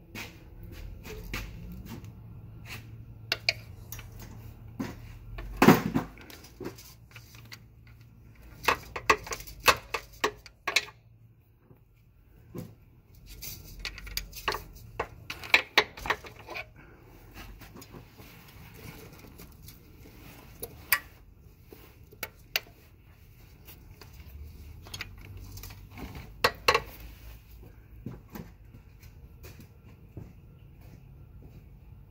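Metal hand tools clicking and clanking against the rear motor mount bolts and bracket as the bolts are loosened, in scattered clusters of sharp metallic clicks with quiet gaps between.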